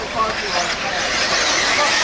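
Electric 1/8-scale RC buggies running on a dirt track, heard as a steady hiss of motors and tyres, with faint voices over it.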